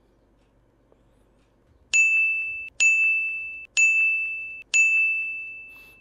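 Four identical bell-like dings on one high pitch, starting about two seconds in and about a second apart, each struck sharply and dying away, the last ringing longest. It is a comedic sound effect edited over a silent pause.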